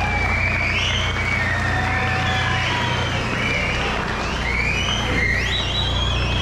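Finger whistling (Okinawan yubibue): a high, piercing whistle that holds one pitch, slides to another, and does so over and over, climbing higher near the end.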